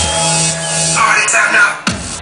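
Electronic dance music from a live DJ set, played loud over a club sound system. About halfway through the bass cuts out for a short break, then the beat drops back in with a sharp hit near the end.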